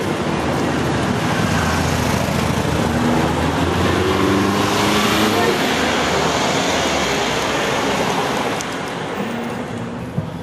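Street traffic: a motor vehicle passing, its noise swelling to a peak about halfway through and easing off near the end, with voices in the background.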